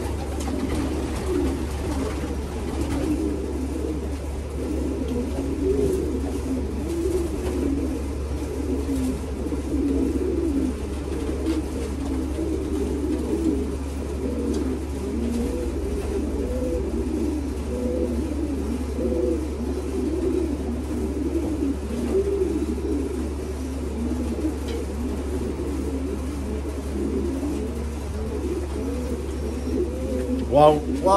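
Racing pigeons cooing continuously, many overlapping low, wavering coos, over a steady low hum.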